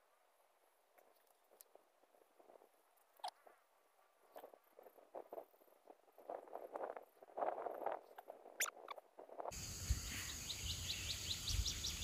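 Faint scattered rustling and soft knocks as chili seedlings are pulled up by hand from wet soil, growing busier over the seconds. Near the end a louder steady outdoor background starts abruptly, with a fast, even high-pitched ticking.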